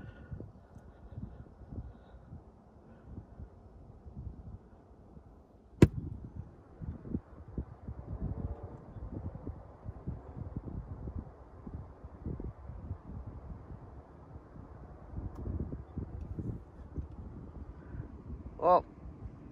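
Wind buffeting the microphone in low, irregular gusts, with one sharp click about six seconds in.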